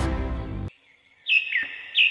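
Background music that cuts off abruptly, then after a brief silence a bird calling with a few short chirps that fall in pitch.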